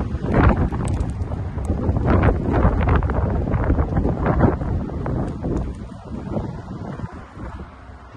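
Wind buffeting the microphone in gusts, a loud low rumble that eases off over the last few seconds.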